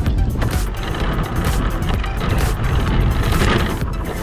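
Background music over the steady driving noise of a remote-control car, heard from a camera mounted on the car's body.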